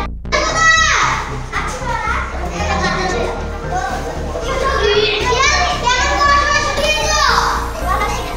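A group of children shouting and chattering, with a high falling shout just after the start and another near the end, over background music with a steady low beat.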